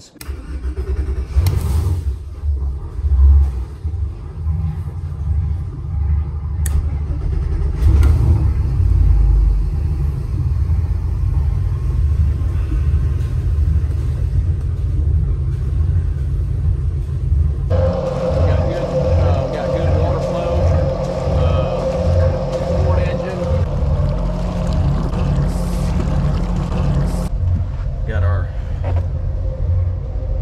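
Twin MerCruiser 8.1-litre big-block V8 gas inboard engines starting one after the other, about a second in and about eight seconds in. Both then idle with a deep, evenly pulsing rumble just below 700 rpm. A steadier, higher hum joins for about ten seconds past the middle.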